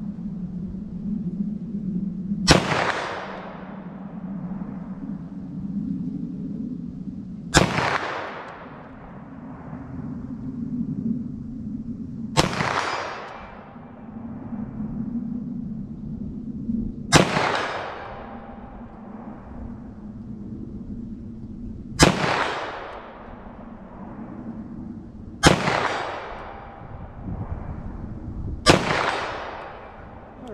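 Seven 9mm +P pistol shots fired slowly, roughly one every three to five seconds. Each is a sharp crack followed by a long fading echo, with a steady low hum underneath between the shots.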